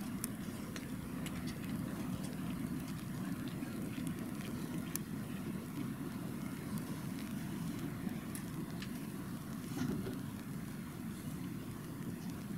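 Quiet outdoor stadium ambience: a steady low rumble with scattered faint clicks, the hush at the start line while the runners hold still in their blocks.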